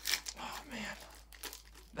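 Foil wrapper of a Panini Prism baseball card pack being torn open and crinkled by hand. There is a cluster of short crackles in the first second, and it goes quieter after.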